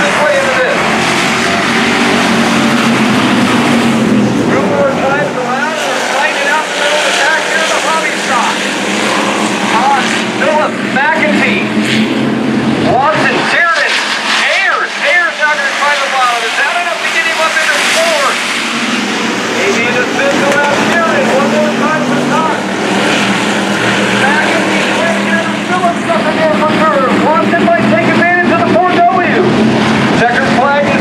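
A field of hobby stock race cars running and revving around a dirt oval, the engine sound rising and falling continuously as the pack goes through the turns.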